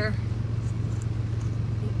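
A steady low-pitched background hum at an even level, with one faint click about a second in.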